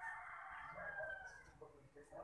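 A faint, drawn-out animal call lasting about a second and a half, easing off near the end.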